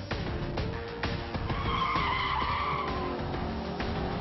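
Audi RS5's tyres squealing as the car takes a fast corner, the squeal rising about a second and a half in and fading by about three seconds, with the car running underneath and background music.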